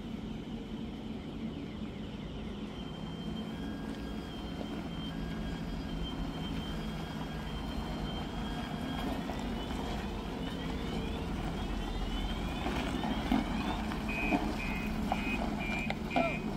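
Heavy truck-trailer's diesel engine running low and steady as the rig reverses, with its reverse warning sounding over it: a steady high tone, then sliding tones, then evenly repeated beeps near the end.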